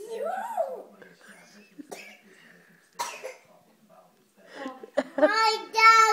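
Toddler babbling in a high, sing-song voice without real words: a rising-and-falling call at the start and a longer string of sounds near the end, with a short cough about halfway.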